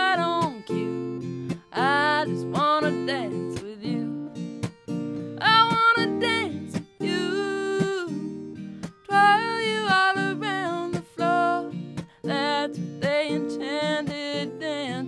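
A woman singing a country song, accompanying herself on a strummed acoustic guitar. Her sung phrases come and go, while the guitar chords keep on between them.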